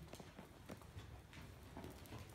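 Faint hoofbeats of a ridden APHA Paint gelding moving across a dirt arena floor, a few uneven footfalls a second.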